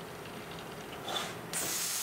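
Compressed-air hiss from the TouchPrint Essentials stencil printer's pneumatics as its bottom-side stencil wiper runs through its sequence: a brief puff about a second in, then a sharper, high-pitched hiss lasting nearly a second from about one and a half seconds in.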